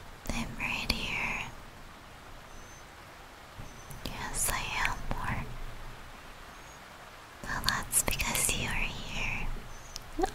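A woman's soft whispering in three short breathy phrases, with quiet pauses between them.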